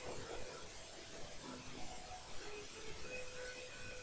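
Faint scratching of a pen making short shading strokes, over quiet room tone.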